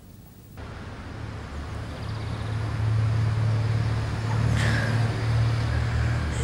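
Low rumble of traffic that comes in suddenly about half a second in, grows louder over the next two seconds, then holds steady.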